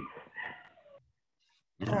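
Speech only: a man's voice trails off at the end of a sentence, then a gap of dead silence, then another speaker starts talking near the end.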